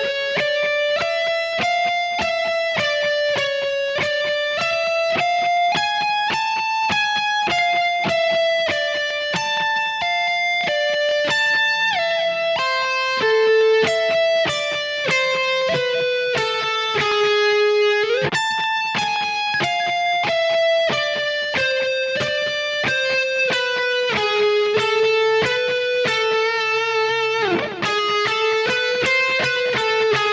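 Kiesel DC700 seven-string electric guitar with Lithium pickups, played through a Kemper profiler and tuned a whole step down. It plays an alternate-picking lead lick slowly, one single note at a time at about two to three notes a second, with a pitch slide about two-thirds of the way through and another near the end.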